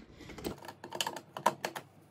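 Eyeshadow palettes clacking against one another and a metal wire tray as one is pulled out and others are shifted by hand: a quick run of light clicks and taps.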